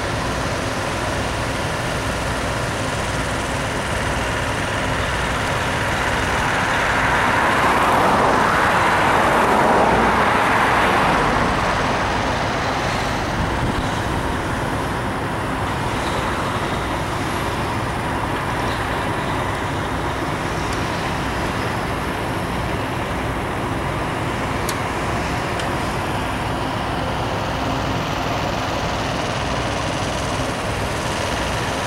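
Steady drone of heavy diesel trucks and equipment running, swelling louder for several seconds about a quarter of the way in, as a vehicle comes close and moves off.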